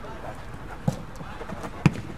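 A football kicked on an artificial-turf pitch: one sharp thud of boot on ball near the end, the loudest sound, with a softer knock about a second in.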